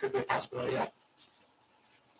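A person's voice speaking briefly, stopping less than a second in, then only faint room tone.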